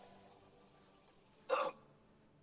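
A faint, quiet film soundtrack, broken about one and a half seconds in by a single short, sharp vocal catch like a startled gasp.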